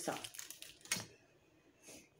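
Faint crinkling of a plastic bag as a ruler still in its packaging is handled, with a single light tap about a second in.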